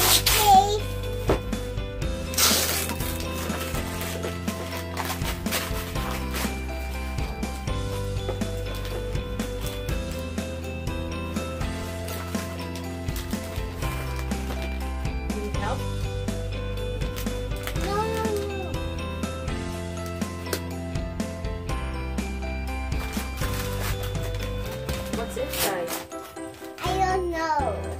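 Background music with held notes and a steady bass, over the crinkling and ripping of gift wrapping paper being torn off a box by hand; the loudest rip comes about two and a half seconds in.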